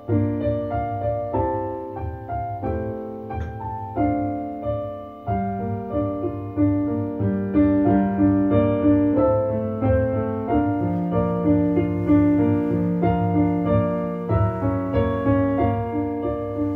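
Solo piano playing: chords struck one after another with a melody line above, over sustained low notes.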